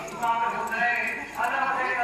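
A voice chanting a noha, a Muharram lament, in long sliding notes, with faint rhythmic strikes of matam (hand-beating) beneath it.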